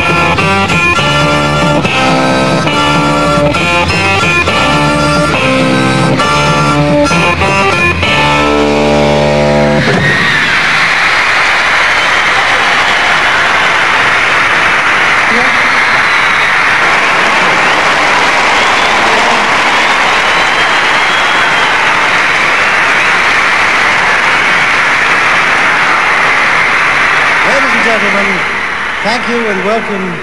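A live beat group with guitars and harmonica playing the last bars of a song, which stops about ten seconds in. A big crowd of teenage fans screaming and cheering follows, thinning near the end as a man starts to speak.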